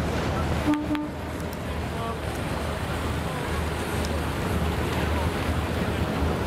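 Steady low hum of boat engines under water noise and the chatter of many distant voices. A brief pitched toot sounds about a second in.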